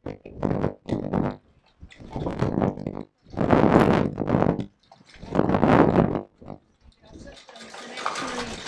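A woman's voice amplified through a microphone and loudspeaker, loud, in phrases of a second or so with short pauses between them.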